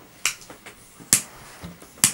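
A pocket butane jet torch lighter's igniter clicking: two sharp clicks about a second apart, the second the loudest, with a few fainter ticks between them.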